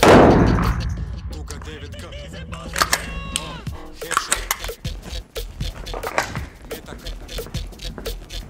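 A single loud pistol shot at the start, echoing and dying away over about a second in the concrete indoor range. Background hip hop music plays throughout.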